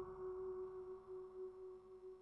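A single vibraphone note, struck just before, ringing on as one steady pure tone and slowly fading.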